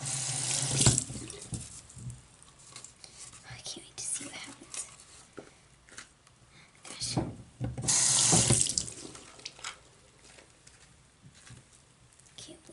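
A sink tap running in two short bursts of about a second each, one at the start and one about eight seconds in, wetting an empty cardboard toilet paper roll, with faint handling sounds between.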